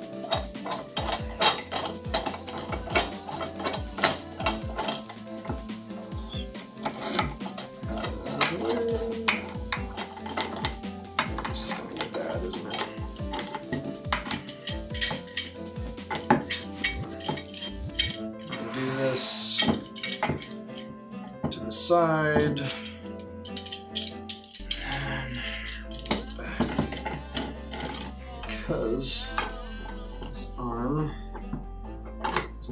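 Steel C-clamp screws being turned down by hand onto glued wood, the metal T-handles clinking and rattling in quick, irregular clicks that thin out after about eighteen seconds, over background music.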